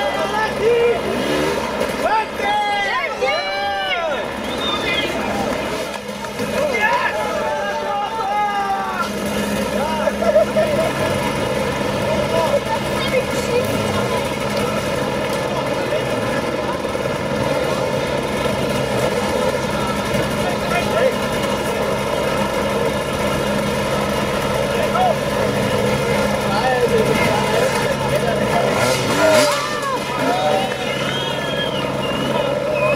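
Several hard-enduro dirt bike engines running at once, holding steady revs as the bikes are pushed and hauled up a steep slope. Spectators shout over them in the first several seconds and again near the end.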